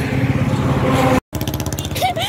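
Two-wheeler engine running, a steady low hum with wind noise, cut off abruptly a little over a second in. After the cut, quieter roadside traffic.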